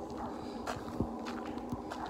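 Footsteps of a person walking on a path, a few separate steps over a steady faint background hum.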